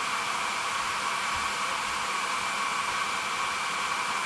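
Conair hair dryer, used as a resistive load, blowing steadily: an even rush of air with a faint steady whine, its heating element taking about 650 watts.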